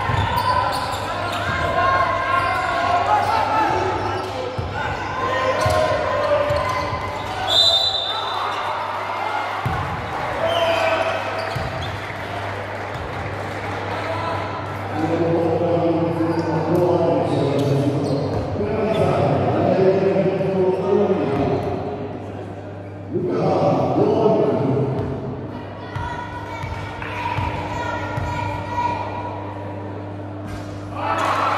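Basketball bouncing on a hardwood court during play in a large, echoing gym, with voices of players and spectators through most of it and a brief high-pitched tone about seven seconds in.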